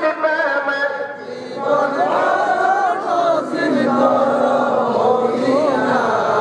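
A man's voice chanting a sermon in a slow, wavering melody with long held notes, with a short breath-pause about a second in.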